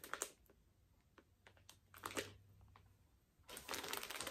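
Faint handling noise: soft rustles and small clicks as plush stuffed toys are handled, put down and picked up, busier near the end.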